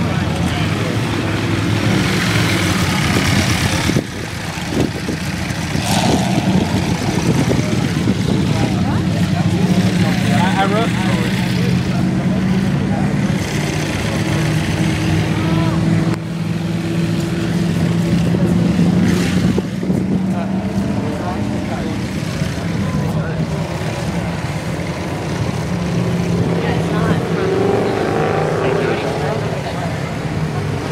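Supercar engines running at low revs as the cars pull slowly away, over crowd chatter, with two abrupt cuts. A Bugatti Veyron's W16 is heard at first, then a Lamborghini Aventador's V12 in the later part, which rises in pitch near the end as it revs.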